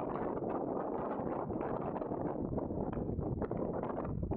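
Wind blowing across the microphone, a steady rushing noise with constant fluttering.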